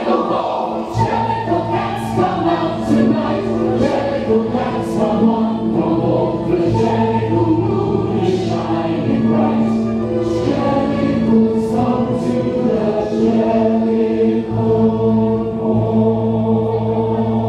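A choir of voices singing with instrumental backing, over steady low notes and held chords, with a sharp percussion strike every second or two.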